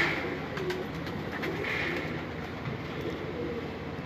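Domestic pigeons cooing softly in the background.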